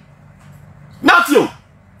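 A man's short vocal outburst about a second in, after a pause: one half-second exclamation that falls sharply in pitch. Around it only a faint low room hum.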